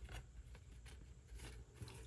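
Faint rustling and a few light ticks from paper craft tags and a thin embossed metal sheet being shifted in the hands, over near-silent room tone.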